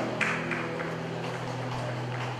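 Classical guitar's last chord ringing on and slowly fading at the end of a song. A short noisy burst comes about a quarter second in.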